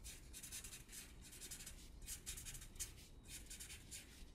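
Felt-tip marker scribbling on paper: a quick run of short, faint strokes as an area is shaded in.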